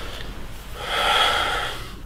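A person's breath: one heavy, audible exhale or sigh lasting about a second, starting just under a second in.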